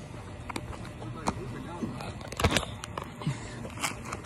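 A basketball bouncing on a hard outdoor court, a few uneven thumps with the loudest about halfway through, over faint background voices.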